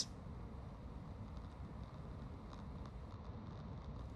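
Faint, steady room tone: a low hiss and hum with no distinct event.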